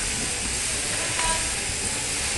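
Steady hiss-like din of a working shearing shed, with electric shearing handpieces running on the stands.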